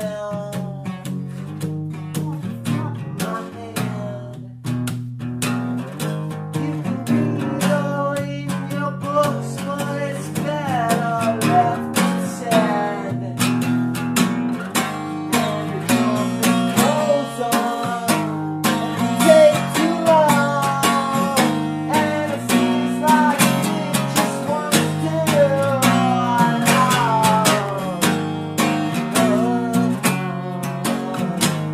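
Guitar music, an instrumental passage with no sung words: chords held and changed in the low register under a melodic line of plucked, bending notes.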